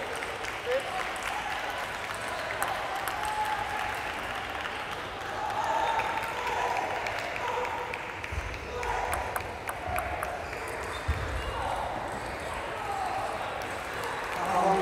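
Spectators' indistinct voices and clapping between table tennis points, with a few light clicks.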